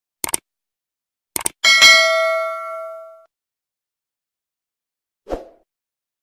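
Sound effects: a click, a quick double click about a second later, then a bright bell ding that rings out for about a second and a half. A short soft knock comes near the end.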